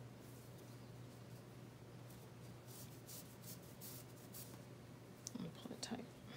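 Faint scratchy rustling of thick cotton macrame cord being looped and drawn through by hand, clustered in the middle, over a low steady hum.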